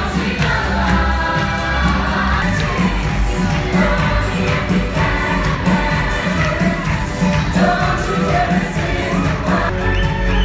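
Live stage-show musical number: a cast singing in chorus over backing music with a steady beat.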